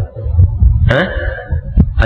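A man's short questioning "hah?" about a second in, over a steady low rumbling hum in the lecture recording, with a faint click near the end.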